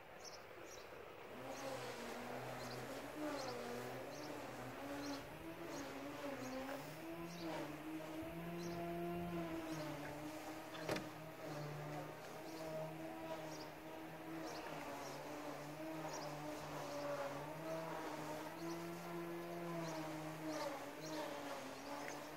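A flying insect buzzing, a steady drone whose pitch wavers slowly as it moves about, starting about a second and a half in. Short faint chirps repeat high above it.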